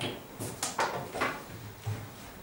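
A handful of short knocks and clatters, about six in two seconds, irregularly spaced.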